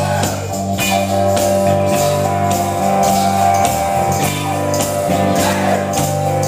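Live gospel band playing an instrumental passage: keyboard and electric guitar holding chords over a bass line, with a steady beat.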